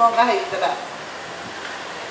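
A woman talking into a handheld microphone for the first second or so, then a steady background hum with no voice.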